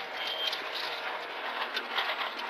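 Renault Clio Rally4 rally car at speed, heard from inside the cabin: an even rushing of engine, tyre and road noise with no clear engine note.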